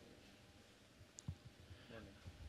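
Near silence: room tone, with a few faint clicks and low knocks about a second in.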